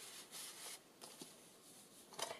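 Faint rustle of paper being handled: a handmade cardstock tag and folded paper pieces slid and moved by hand. There is a short soft rustle about half a second in, then a few faint handling sounds.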